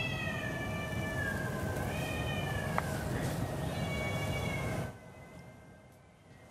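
Soft background music: long held high tones that slowly sink in pitch over a steady hiss, cutting off about five seconds in.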